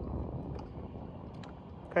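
Wind buffeting the microphone and water moving against a small skiff's hull: an uneven low rumble that eases slightly toward the end.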